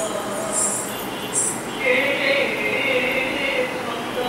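Odissi dance accompaniment: bright metallic strikes a little under a second apart in the first half, then a voice holding one long sung note for about two seconds.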